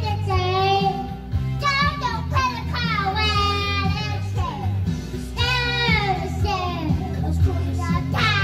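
A young child singing in phrases over backing music with a steady low bass line.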